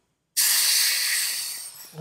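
High-pressure air hissing out of the fill hose as the line from the carbon fibre tank is bled off after topping off a PCP air rifle. The hiss starts sharply about a third of a second in and fades away over about a second and a half.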